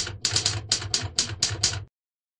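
Typewriter sound effect: about ten quick key clacks, roughly five a second, typing out the letters of a logo, then it stops.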